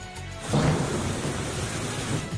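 Rainstorm sound effect with a low rumble: a dense rushing noise that swells in about half a second in, over soft background music.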